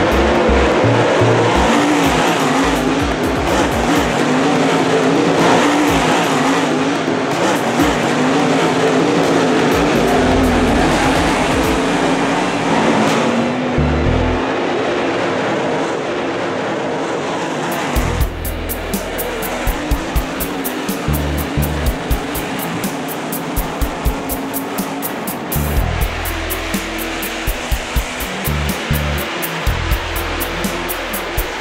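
Dirt super late model race cars' V8 engines running at speed as the pack goes around the dirt oval, mixed with background music. About eighteen seconds in, the engine noise drops back and the music's steady beat comes forward.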